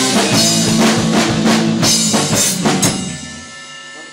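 Rock band playing live in a rehearsal room, drum kit with crashing cymbals and electric guitar. After a few last hits a little under three seconds in, the playing stops and the cymbals and guitar ring out and fade, the close of the song.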